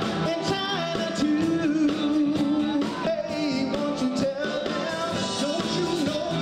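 A male R&B vocal group singing live over a full band, with long held notes and vibrato in the voices.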